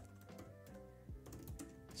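Faint typing on a computer keyboard, a few scattered keystrokes, over quiet background music with sustained tones.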